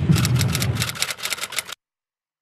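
A fast run of sharp clicks over a low rumble. It cuts off abruptly into silence near the end.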